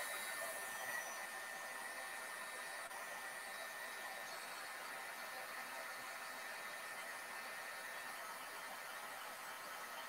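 Craft heat gun blowing steadily, a fan-driven airy hiss, as it melts white embossing powder to heat-set it over stencilled ink.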